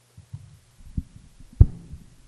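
Microphone handling noise: a few low, dull thumps as the microphone is taken off its stand, the loudest about one and a half seconds in, over a steady low electrical hum.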